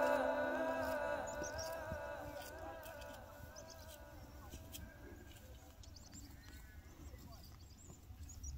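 Background music fading out over the first few seconds, leaving a faint low rumble with a few small, high chirps.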